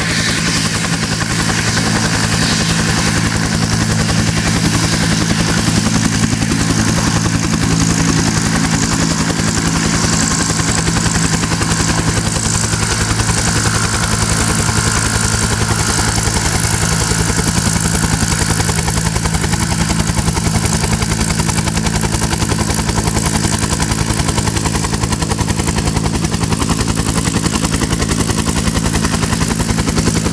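Bell UH-1 Huey helicopter running on the ground with its two-blade rotor turning. The engine note is steady, with a rapid low beat from the blades under it.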